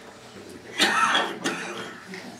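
A person coughing about a second in, with a shorter second burst just after.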